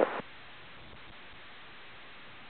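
The end of a pilot's airband radio transmission cuts off about a quarter second in. A steady, faint hiss from the tower-frequency recording follows.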